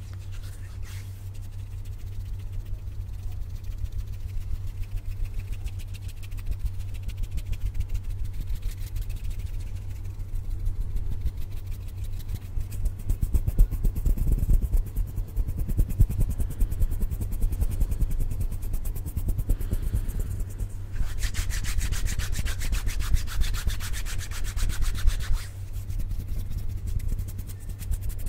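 Bare hands rubbing together and brushing right up against a Blue Yeti microphone: fast, continuous rubbing strokes with a deep rumble from the closeness to the mic. About three-quarters of the way in, a brighter, hissier stretch of rubbing lasts roughly four seconds.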